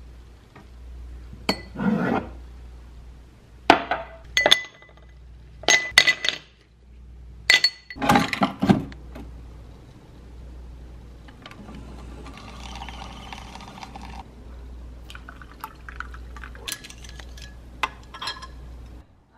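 Glassware clinking as a drinking glass is taken out and set down, then a Keurig single-serve coffee maker dispensing coffee into the glass with a steady hiss for about three seconds, and near the end a metal spoon clinking against the glass as the coffee is stirred.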